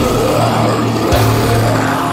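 Doom-death metal: heavily distorted, down-tuned guitar and bass holding a long low chord, with a drum and cymbal hit about a second in.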